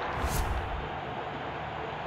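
A short whoosh about a third of a second in, from the broadcast's graphic transition, over a steady noisy ambience from the match feed.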